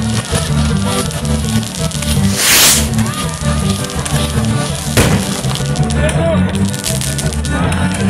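Music with sustained low notes and a steady beat over a burning fireworks castle. There is a loud hissing burst of sparks about two and a half seconds in and a single sharp bang about five seconds in.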